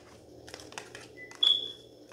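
Soft clicks and rustles of cards being handled, then a faint short tone and a single high electronic beep about one and a half seconds in that fades away.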